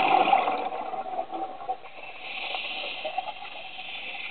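Scuba diver breathing through a regulator underwater. The bubbling rush of an exhale fades over the first second or so, then a steady hissing inhale begins about two seconds in.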